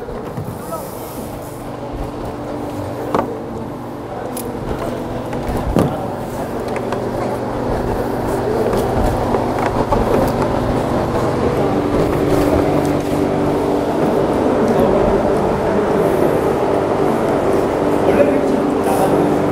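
Indistinct chatter of several people talking at once, over a steady low hum, growing gradually louder.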